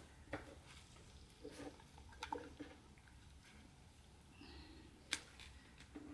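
Faint handling of raw lamb pieces in earthenware bowls: a few soft wet squishes and small knocks as the meat is moved by hand, with one sharper click near the end.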